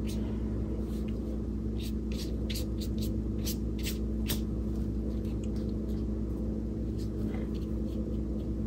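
Steady low electrical hum, with a few faint short ticks and scratches from a fine brush dabbing paint onto paper, clustered between about two and four and a half seconds in.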